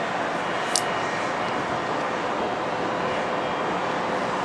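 Steady wash of distant city traffic noise heard from high above the street, with one brief sharp click about a second in.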